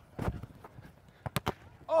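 Volleyball being struck by hand during a rally: one smack at a jump hit at the net about a quarter second in, then two louder sharp smacks about a tenth of a second apart about a second and a half in.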